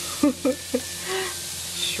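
Shrimp frying in a hot pan: a steady sizzling hiss, with steam rising just after hot sauce has been stirred in.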